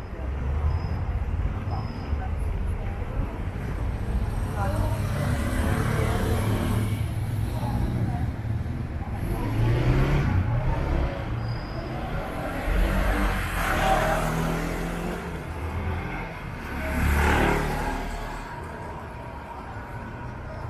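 Street ambience with motor vehicles passing, swelling and fading about three times, over a steady low rumble and indistinct voices.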